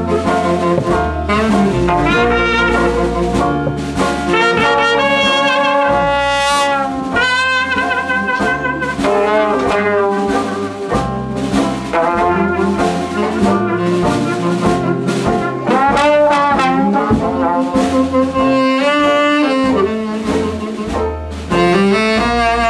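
Traditional New Orleans jazz band playing live, with trombone and cornet leading together over saxophone, banjo, string bass and drums. The cornet drops out near the end.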